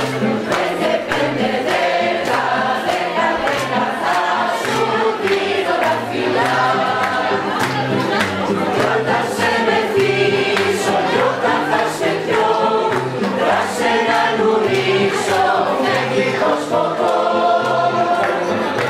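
A choir of mostly women's voices singing a song together, accompanied by an acoustic guitar playing a steady, even rhythm underneath.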